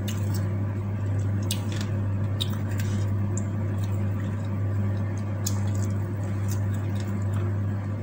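Fingers pressing and kneading cooked rice with sambal on a wooden plate, giving soft squishes and small sticky clicks, along with mouth sounds of chewing. A steady low hum runs underneath.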